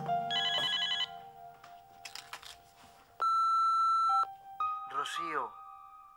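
Electronic desk telephone ringing with a short warbling trill just after the start, then a loud steady beep lasting about a second, about three seconds in, typical of an answering machine picking up. Near the end a short falling sound is heard, and soft sustained background music runs underneath.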